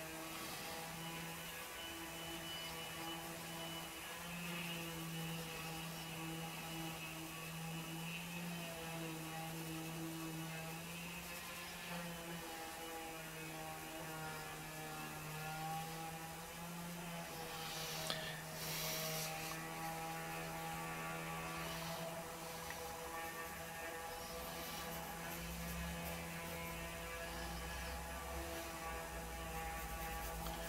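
Distant string trimmer (weed eater) engine running, heard as a steady buzzing tone whose pitch wavers and dips, then picks up again every few seconds.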